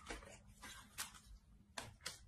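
Near silence with a handful of faint, sharp clicks scattered through it, the clearest about a second in.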